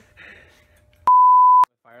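Edited-in censor bleep: a loud, steady, single-pitched beep lasting about half a second, starting and stopping abruptly just past the middle and covering a swear word spoken in the middle of a phrase. Brief, low speech comes just before it.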